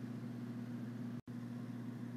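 Steady low electrical hum with faint hiss, the recording's own noise floor, broken by a split-second gap of total silence just over a second in.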